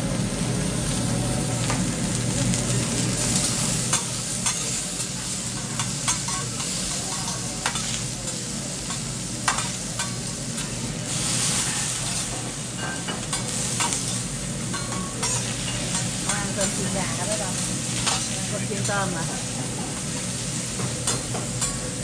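Food sizzling on a hot steel teppanyaki griddle, with metal spatulas scraping and clicking against the griddle surface many times as the chef turns and chops it.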